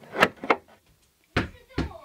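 Two dull thumps about half a second apart, bumps against a door or wall.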